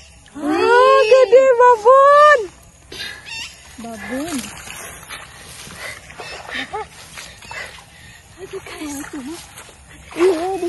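A woman's loud, drawn-out wordless cry lasting about two seconds, starting just after the beginning, followed by a few short, softer vocal sounds.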